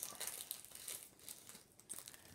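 Plastic packaging and bubble wrap crinkling and rustling in the hands as a small wrapped jewelry package is opened, in irregular crackles.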